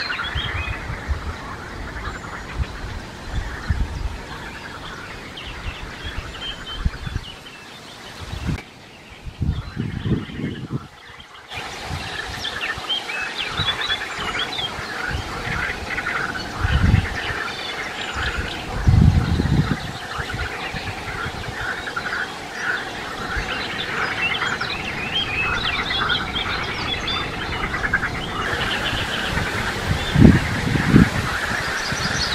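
Many short high peeping calls from Eurasian coot chicks begging as the adult feeds them water weed, with occasional low rumbles underneath. The calls thin out for a few seconds about a third of the way in, then come thick again.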